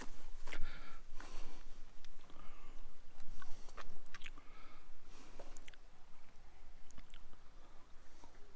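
Footsteps crunching on a dry dirt path strewn with dry grass and leaves, a run of irregular crackles that grows sparser over the last few seconds.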